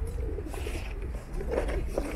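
Pigeons cooing: low, wavering coos, the strongest about a second and a half in, over a steady low rumble.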